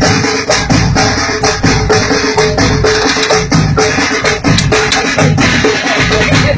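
Folk drum band playing: large double-headed bass drums and smaller snare drums beat a steady rhythm, with a flute melody of short held notes over them.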